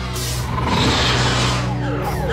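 Cartoon sound effect of robotic mecha beasts' engines, starting just after the beginning as a loud rushing, revving noise with a few falling whistling tones near the end. Steady background music runs underneath.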